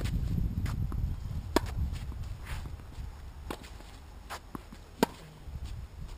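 Tennis ball struck by rackets and bouncing on the court in a rally: sharp, loud pops about a second and a half and five seconds in, with fainter hits and bounces from the far end between them. Wind rumbles on the microphone underneath.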